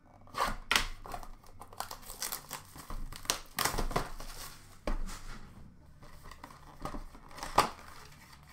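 A cardboard blaster box of Upper Deck hockey cards torn open by hand and its plastic-wrapped packs pulled out: irregular tearing and crinkling of cardboard and plastic, with the sharpest tear near the end.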